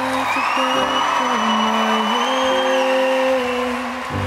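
Music with one long held high note that slides up into place and drops away about three quarters of the way through, over a steady noisy bed.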